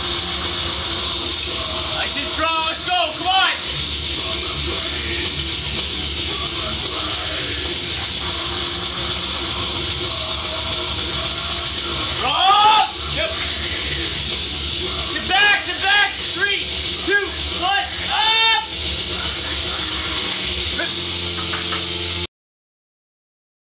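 Gym room noise with a steady hiss, broken by several wordless shouted calls from people around a lifter during a heavy barbell squat. The calls come a few seconds in, about halfway through, and in a cluster a few seconds after that.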